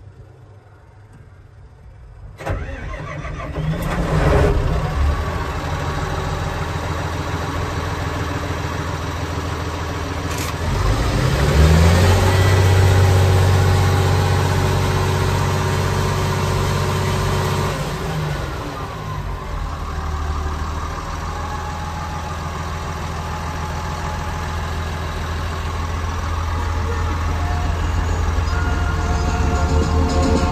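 Komatsu D65PX-17 crawler dozer's diesel engine starting about two seconds in, then idling. Near the middle it revs up to a higher steady speed for about six seconds, then drops back to idle.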